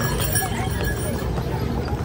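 Horses' hooves clip-clopping at a walk on a paved road, several horses and a horse-drawn cart passing, with people's voices around them.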